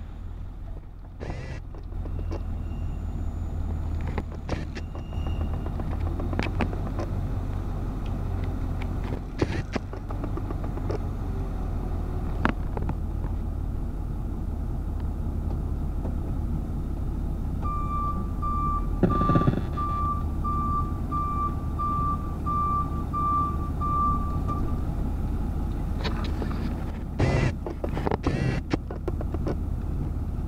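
Heavy construction machinery's diesel engine running with a steady low drone while a crawler crane lifts a precast concrete panel. Past the middle, a reversing alarm beeps about twice a second for roughly seven seconds, and scattered knocks sound throughout.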